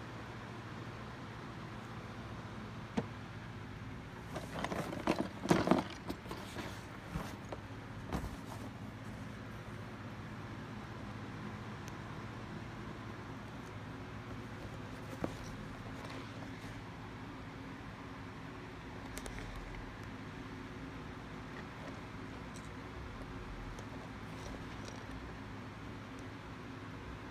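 Cardboard toy boxes being handled and shifted, with a cluster of rustling, scraping knocks about four to eight seconds in and a few single taps later, over a steady low hum.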